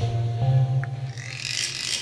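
Trailer score: a deep bass hit lands at the start and holds as a low drone with a few steady higher tones over it, while a rising whoosh swells through the second half.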